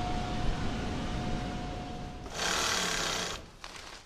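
Industrial sewing machine stitching in one loud burst of about a second, starting a little past halfway, over background noise with a faint steady tone in the first half.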